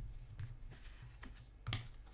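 Cards being handled and shuffled in the hands over a desk: a few light clicks and taps, the loudest a little before the end.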